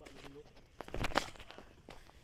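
Footsteps on a dry, leaf-littered dirt trail going downhill, with a louder crunching step about a second in.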